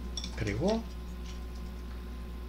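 A few light clinks, like a utensil or cup tapping a dish, then a short wordless vocal sound from a man that rises in pitch, under a second long.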